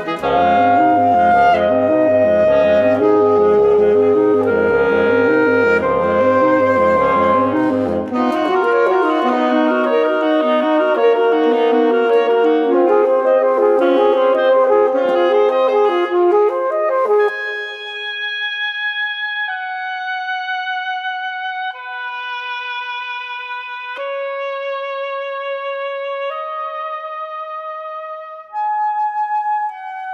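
Reed quartet of alto saxophone, oboe, clarinet and bassoon playing contemporary classical music: several instruments together, with a pulsing low line for the first eight seconds or so, thinning about seventeen seconds in to a single wind instrument holding long notes one after another, more quietly.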